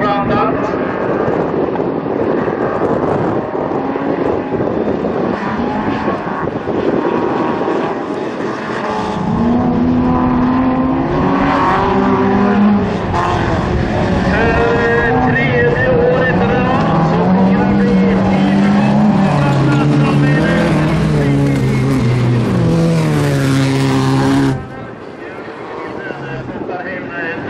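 Bilcross race cars lapping the track, their engines revving up and dropping back as the drivers shift and lift for corners, more than one engine heard at once. The loud engine sound cuts off abruptly a little before the end, giving way to quieter sound.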